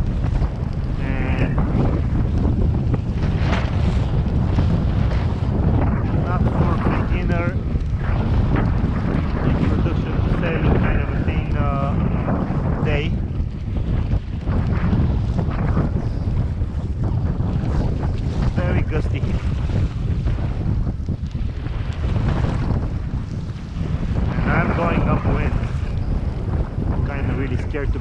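Gusty wind blowing hard across the microphone in a steady rumble, over choppy water washing around a sailing kayak.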